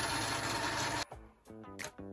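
Sealey SM27 bench metal lathe running with the leadscrew power feed engaged, its motor and gear train making a steady mechanical whir that cuts off abruptly about halfway. Faint background music follows.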